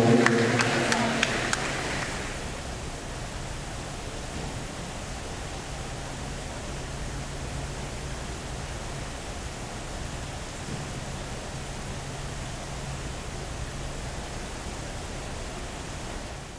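Voices and noise from the spectators fading out over the first two seconds, then a steady even hiss with a faint low hum.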